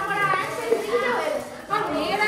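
Speech: a woman and a young boy talking back and forth.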